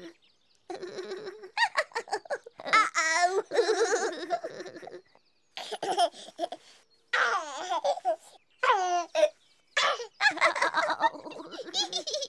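High, childlike laughing and a baby's giggling in repeated short bursts with brief pauses between them.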